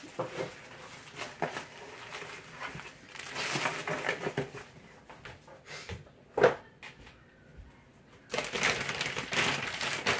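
Plastic shipping bags and packaging rustling and crinkling, with scattered small knocks and one sharp, louder thud about six and a half seconds in. Denser crinkling returns near the end.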